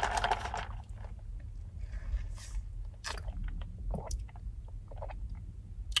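Straw being stirred through ice in a plastic cup of iced latte: scattered light clicks and scrapes of ice against the cup and the straw rubbing in the lid.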